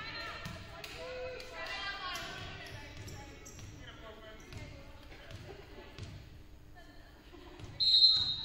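Reverberant gymnasium with players' voices calling out and short knocks of a volleyball bouncing on the hardwood floor; near the end a short, loud referee's whistle blast signals the serve.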